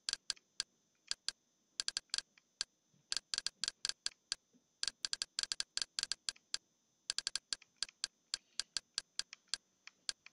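Short, sharp clicks, one per step, as a long on-screen menu list is scrolled. They come in irregular runs of quick clicks, several a second at times, with short pauses between.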